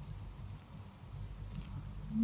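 Faint room tone with a steady low hum, starting abruptly at the beginning.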